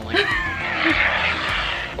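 A brief laugh, then an aerosol can of shaving cream spraying foam in a steady hiss for about a second and a half.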